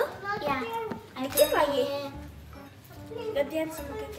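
Young girls talking to each other, with light background music under their voices.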